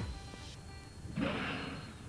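A killer whale blowing at the surface: one short, breathy whoosh of exhaled air a little past the middle, with faint music underneath.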